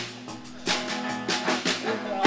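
Live band music in a short break between sung lines: a held chord with several drum hits.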